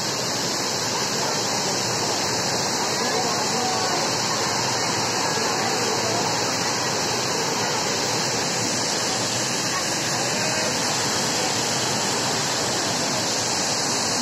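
Waterfall and rocky cascade rushing, a steady roar of falling water, with faint voices of people in the background.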